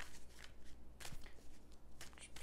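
A deck of tarot cards being shuffled by hand: soft rustling and slapping of cards, with a sharper snap about a second in.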